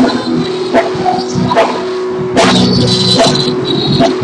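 Live church worship band music: a held keyboard tone under a steady beat of drum hits a little under a second apart. The band grows fuller and louder about two and a half seconds in.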